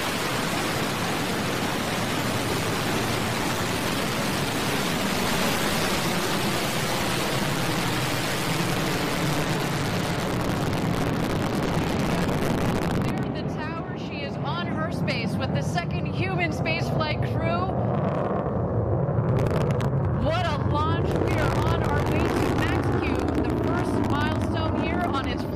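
Blue Origin New Shepard rocket's BE-3 engine at liftoff, a loud, dense, steady rushing roar. About halfway through the roar thins to a low rumble as the rocket climbs away, and voices come in over it.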